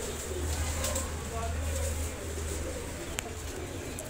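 Teddy pigeons cooing, a low steady coo through the first half, with a single sharp click about three seconds in.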